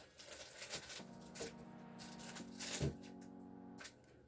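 Light clicks and taps of a plastic diamond-painting drill pen setting resin drills onto the adhesive canvas. Under them, from about a second in, a faint steady pitched tone that shifts pitch about halfway through.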